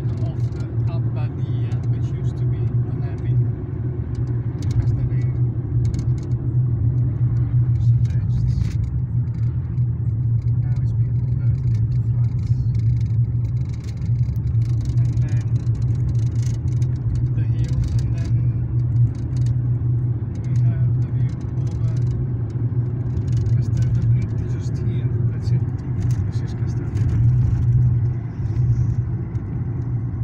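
Steady low road drone of a car heard from inside the cabin while driving: engine and tyre noise at an even level.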